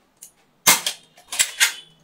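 A toy foam-dart blaster's plastic mechanism clacking as it is handled: a faint tick, then three sharp clacks, the last two close together.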